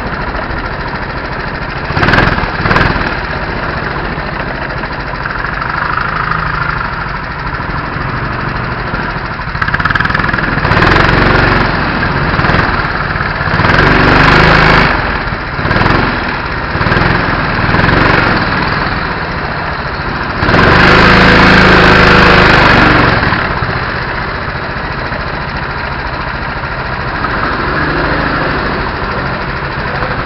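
Rental go-kart engine running at low speed and then idling as the kart rolls into the pit lane and comes to a stop, with several louder surges along the way, the loudest about twenty seconds in.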